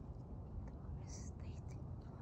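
Faint rustling of weeds being pulled by hand from a garlic bed, over a steady low wind rumble on the microphone, with a short hiss about a second in.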